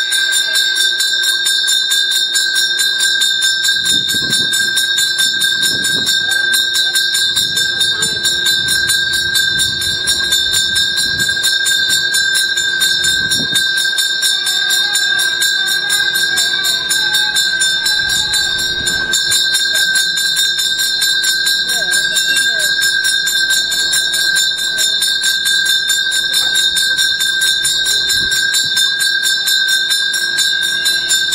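A temple bell rung rapidly and without a break during the puja, its bright ringing steady throughout, with people talking quietly underneath.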